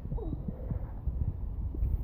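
Low thumps and rumble from a handheld camera's microphone being jostled as the person filming moves over rocks, with a brief faint voice near the start.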